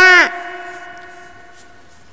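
The last sung syllable of a children's alphabet song, its pitch dropping away within the first quarter second, then a faint held backing note of the song's music that slowly fades.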